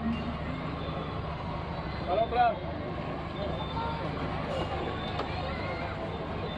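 A SEAT Ibiza's engine idling steadily under crowd chatter, with a brief loud call from a voice a little past two seconds in.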